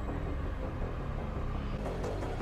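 Steady low rumble of a vehicle in motion from the episode's soundtrack, with an even rushing noise over it.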